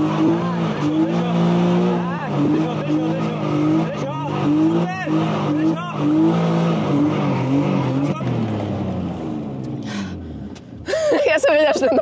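BMW E36 drift car's engine revving up and down again and again as the car slides sideways under power, with tyre squeal. It dies away about ten seconds in, and a voice starts near the end.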